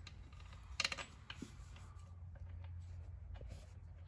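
Light metallic clicks and ticks from hands working the bolts on a Mopar A833 four-speed transmission, with a quick cluster of clicks about a second in, over a steady low hum.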